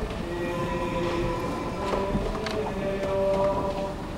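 Church pipe organ playing slow, held chords, the notes changing about once a second, with a few faint clicks and knocks from the crowd.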